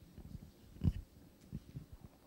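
A few soft low thumps over faint rumbling room noise; the loudest is a single short thump just under a second in, and a smaller one follows about half a second later.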